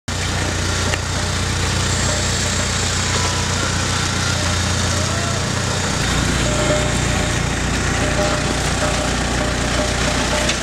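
Forklift engine running steadily, a low drone under outdoor noise; the low hum changes about six seconds in.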